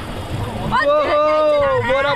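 Low rumbling background noise, then, about three-quarters of a second in, a man's long drawn-out vocal exclamation lasting about a second and sliding down in pitch at its end.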